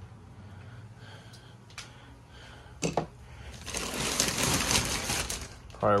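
Plastic wrap around a foam mattress rustling and crinkling for about two seconds as it is handled, after a single sharp click just before the middle.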